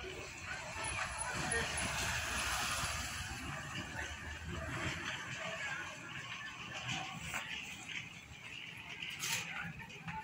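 Indistinct background voices over a steady outdoor noise haze, louder for the first few seconds and easing off later.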